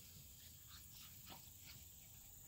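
Near silence: a faint steady high hiss, with a few faint, short sounds from an American Bully puppy about a second in.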